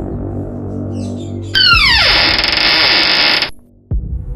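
Synthesizer film-score effect: a low, steady drone, joined about a second and a half in by a loud, several-toned sweep that falls in pitch and cuts off suddenly near the end.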